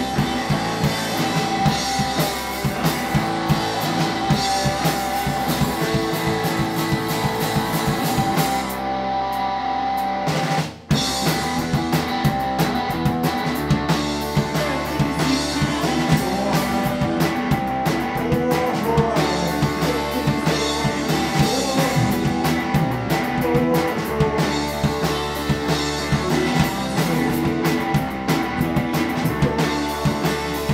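Small rock band playing live: drum kit, electric bass and electric guitar. About nine seconds in the cymbals drop away, the whole band stops for an instant just before eleven seconds, then comes crashing back in and plays on.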